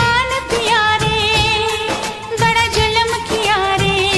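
A Hindi film song: a high voice sings with a wavering vibrato over a steady drum beat.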